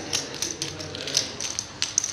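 Poker chips clicking together as they are riffled and stacked in players' hands: an irregular run of quick clacks, with a sharper click about a second in and another near the end.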